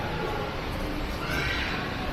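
Shopping-mall background hubbub, with a brief high-pitched cry or squeal about one and a half seconds in.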